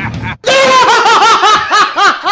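High-pitched rapid laughter, a quick run of short 'ha' pulses about six or seven a second, loud, starting abruptly about half a second in after a voice cuts off.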